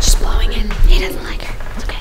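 A girl whispering close to the microphone over background music.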